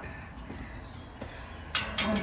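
A crow-like bird gives two short, harsh calls close together near the end, over a faint low background.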